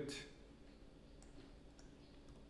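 Near silence with a few faint computer mouse clicks, about a second in and again near the end.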